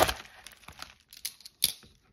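A knife blade cutting through the edge of a plastic bubble mailer, ending in a sharp snap as it breaks through. Faint crinkling of the plastic follows, with another sharp click about a second and a half in.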